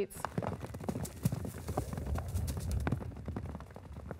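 Bison hooves clattering and thudding in quick, irregular strikes as the animals run out of a livestock trailer onto the ground.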